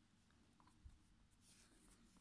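Near silence, with faint rubbing of yarn as a crochet hook works stitches, and one small soft bump a little under a second in.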